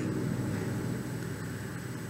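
Background room tone in a pause between sentences: a steady faint hiss with a low hum and a thin high whine, fading slightly.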